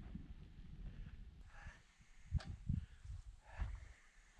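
A few soft footsteps and knocks on the ground in front of the tent, the clearest about two and a half seconds in, over a faint low rumble.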